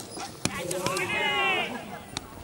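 Cricket bat striking the ball with a sharp crack, another knock about half a second later, then a person's long shout with rising and falling pitch.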